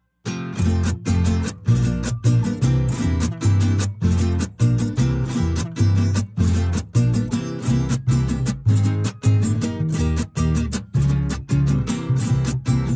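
Instrumental backing track of a Mexican folk song: acoustic guitars strumming a steady chord rhythm over a strong bass line. It comes in sharply a moment after a brief silence.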